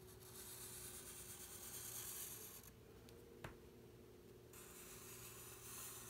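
Faint scratchy hiss of a felt-tip marker drawn across paper in two long strokes, with one light tap between them.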